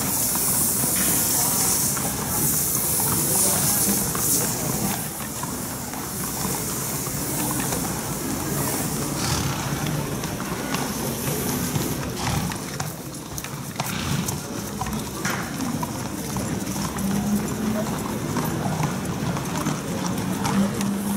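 Water from a garden hose sprays onto a racehorse's coat with a steady hiss for the first few seconds. Then horses' hooves clip-clop as they are walked, with voices in the background.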